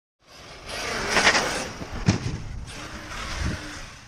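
ARRMA Kraton 1/5-scale 8S RC truck being driven and jumped: a noisy run with a sharp knock about a second in and low thuds at about two and three and a half seconds in.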